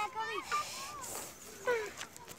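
A child's high-pitched voice calling out in short cries that bend and fall in pitch, the loudest near the end.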